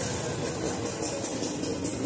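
Egg omelette frying in a pan over a gas burner: a steady hiss, with a low steady hum underneath.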